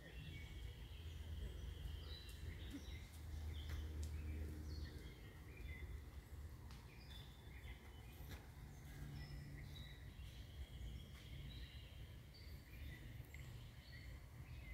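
Faint outdoor ambience: birds chirping on and off throughout, over a low steady rumble.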